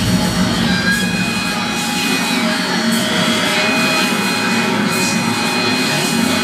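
A low, steady droning intro sound over the PA, starting suddenly, with a few thin high tones held briefly above it.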